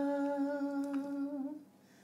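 A woman humming one long, steady note of a slow traditional Galician ballad melody. The note wavers briefly and stops about a second and a half in, leaving near silence.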